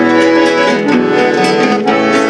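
Instrumental gaúcho folk music: a bandoneon holding sustained chords over three nylon-string acoustic guitars plucking a steady rhythm.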